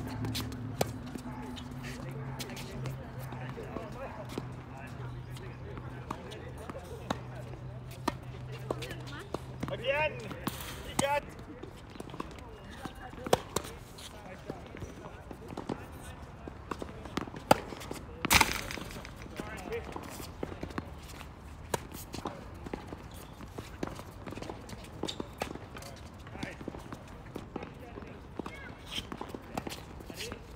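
Tennis balls being struck by rackets and bouncing on a hard court during doubles rallies: sharp, irregular pops scattered throughout, the loudest a little over halfway through. Brief voices are heard among them, and a low steady hum fades out about a third of the way in.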